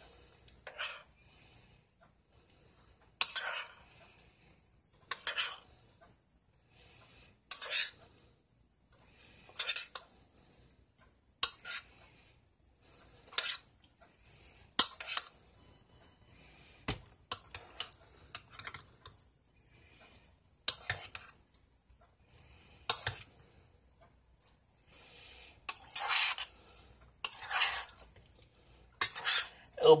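A spoon stirring rotini pasta and clam chowder in a stainless steel saucepan, scraping and clinking against the side of the pot in short strokes every second or two.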